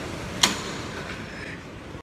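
A door latch clicking once, about half a second in, followed by a steady rushing hiss that slowly fades.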